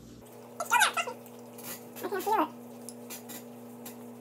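Two short high vocal calls, each curving down in pitch, about a second apart, over a steady low electrical hum.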